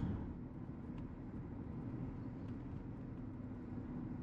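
Steady low road and engine noise of a car driving slowly, heard from inside the cabin.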